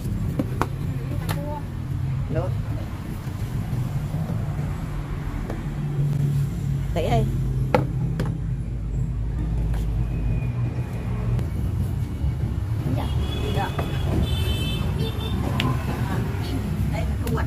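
A low, steady motor rumble, louder between about six and ten seconds in, with a few light knocks over it.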